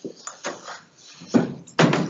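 A few short knocks and thumps, the two loudest in the second half.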